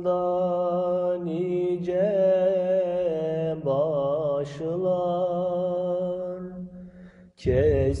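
Male voice singing a Turkish ilahi without instruments, drawing out long melismatic notes with wavering ornamental turns over a steady low vocal drone. The line fades away about seven seconds in, and the next phrase comes in loudly just before the end.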